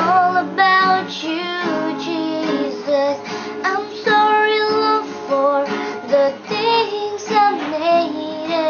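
A girl singing a slow worship song to her own strummed acoustic guitar, her voice carrying the melody in held, gliding notes over steady chords.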